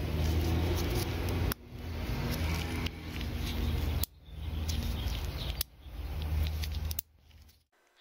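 Plastic push-pin rivet clip being handled in gloved fingers, with a few sharp clicks as the centre pin pops open, a pop that shows the rivet has opened correctly. A steady low hum lies under it, and the sound cuts off and restarts several times.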